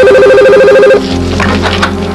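An electronic telephone ring: a single fast-warbling two-tone trill lasting about a second, then cutting off, over tense background music.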